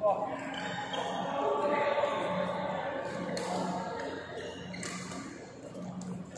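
Badminton hall sound: overlapping voices from the courts with shoe squeaks on the court floor, and a couple of sharp racket hits on a shuttlecock in the middle.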